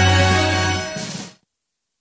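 TV news programme's closing theme music with sustained synth chords over a steady bass, fading about a second in and ending abruptly, followed by dead silence.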